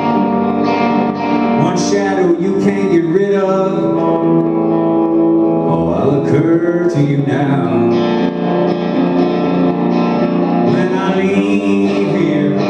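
Live solo performance of a rock song: an electric guitar played through the PA, with sustained notes throughout.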